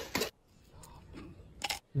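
A single short, sharp click near the end, in an otherwise quiet stretch.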